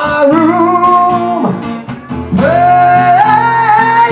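Man singing long held notes into a microphone over an acoustic guitar. One note holds for over a second, there is a short break, then a second held note rises in pitch toward the end.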